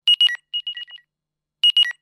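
A phone's electronic ringtone: two short high beeps and a lower beep, followed by a fainter echo of the same notes. The figure plays twice, about a second and a half apart.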